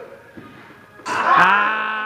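A man's loud, drawn-out vocal cry starting about a second in and holding one pitch for over a second, after a quieter stretch of murmur.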